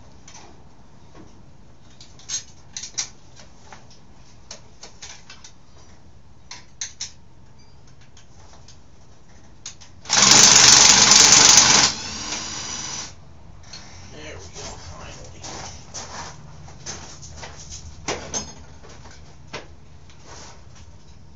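Light metallic clinks and taps of tools and parts on a dirt bike's frame and engine. About ten seconds in, a power tool runs in a loud burst for about two seconds, then more quietly for about another second before stopping.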